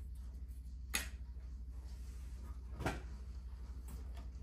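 Two light knocks, about a second in and again near three seconds, as model railway buildings are handled on a wooden table, over a steady low hum.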